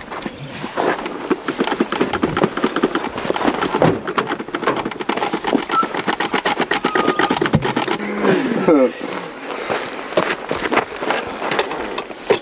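Indistinct conversation: people talking at once, with words too unclear to make out.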